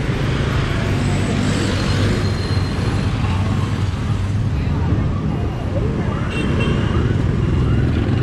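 Heavy motorbike and scooter traffic running past close by, with a city bus passing at the start: a steady, loud mix of small engines and tyre noise.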